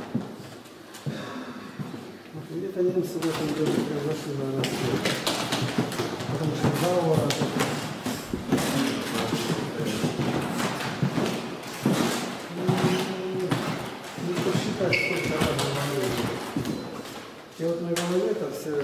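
Indistinct voices of people talking in a room, with a few sharp knocks.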